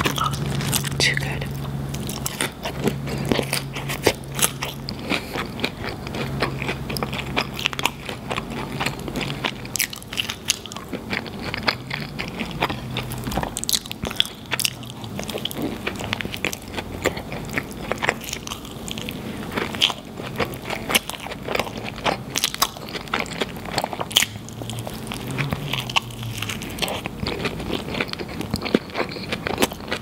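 Close-miked eating of a cheeseburger and fries: biting and chewing with a dense run of small, sharp wet mouth clicks throughout.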